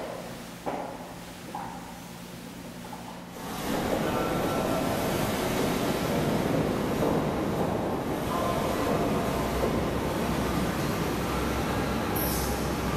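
A footstep or two echoing in a hallway, then from about three seconds in a loud, steady rumble of a boat motor churning through water.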